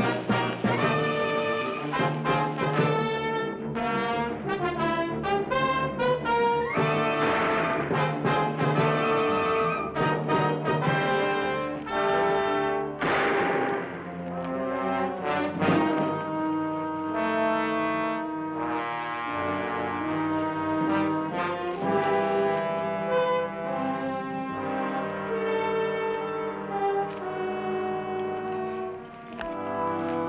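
Orchestral film score with brass to the fore, playing held chords and moving phrases that change note every second or so.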